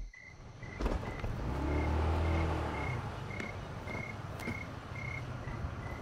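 A cricket chirping steadily, about twice a second, with a motor scooter's engine swelling and fading about two seconds in.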